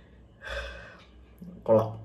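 A man's short, sharp breath about half a second in, followed by a brief spoken word near the end.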